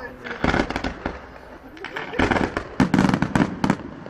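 Fireworks display going off in rapid volleys of sharp bangs and crackles: a short cluster about half a second in, then a longer, louder volley from about two seconds in until near the end.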